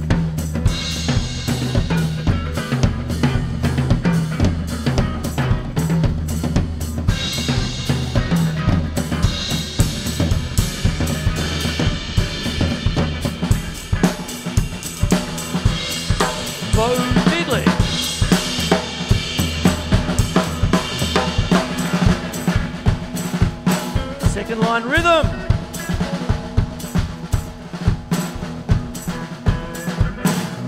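Acoustic drum kit played in a busy groove with snare, bass drum, toms and cymbals, over an electric guitar riff. The guitar bends notes twice, about halfway through and again near the end.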